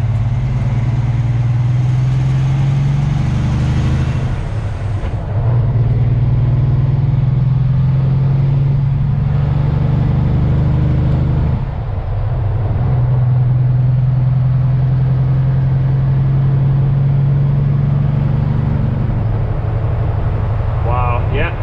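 Semi truck's diesel engine heard from inside the cab as the truck drives, a steady low hum with two brief dips in level, about five and twelve seconds in.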